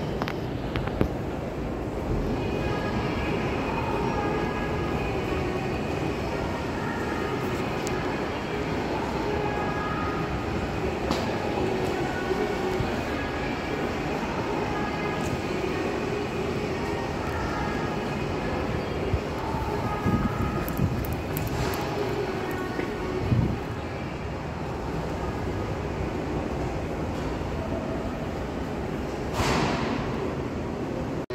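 Steady hum of an underground metro station hall, with a faint murmur of distant voices and a few scattered knocks, the sharpest just before the end.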